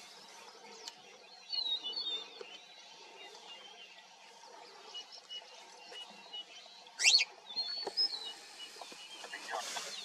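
Wild birds chirping and calling over the quiet hiss of open grassland, with a faint short note repeated at an even pace. About seven seconds in comes one sharp, loud sweeping call, followed by a shorter chirp.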